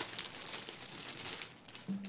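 Crinkling and rustling handling noise close to a microphone, a dense crackle that stops shortly before the end.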